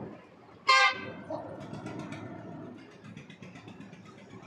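A vehicle horn gives one short toot about a second in, over steady road traffic noise.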